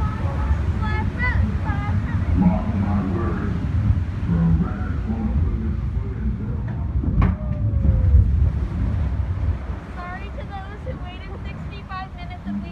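Log flume boat moving along its water channel, a steady rumble of water and wind on the microphone, with voices over it and a single sharp knock about halfway through.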